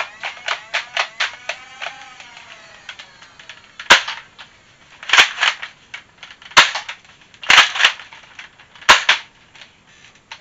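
A modified, rewired Nerf Stryfe flywheel blaster firing foam darts: a string of sharp, loud shots beginning about four seconds in, some single and some in quick pairs. The darts feed without jamming.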